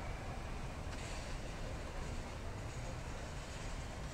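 Steady low rumble of street traffic noise, picked up by a phone's built-in microphone.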